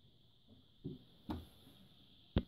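Quiet room with two faint short knocks, one a little under a second in and a sharper click about half a second later: hands pressing and letting go of the docking station's plastic clone button and casing.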